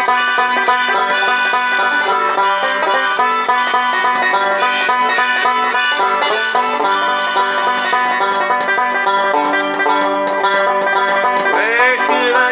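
Resonator banjo picked in a steady rolling pattern, with a rack-held harmonica playing held notes along with it for most of the stretch. Near the end a voice starts singing over the banjo.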